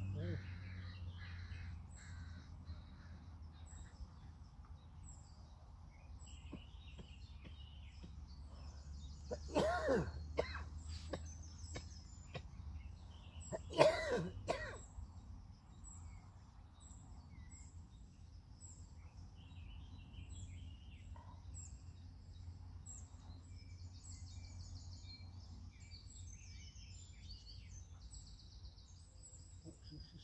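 A crow cawing in two loud runs of calls, about ten and fourteen seconds in, over faint chirping of small birds and a steady low rumble.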